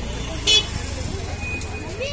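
A short, sharp horn beep about half a second in from a motor scooter pushing through the crowd, over steady crowd babble.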